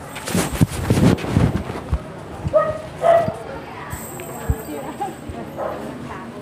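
Phone microphone being handled: a run of bumps and rumbling in the first second and a half, then two short calls about halfway through.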